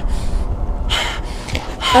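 A gagged woman's frightened breathing: several sharp, gasping breaths through a tape gag, about half a second apart, over a low rumble.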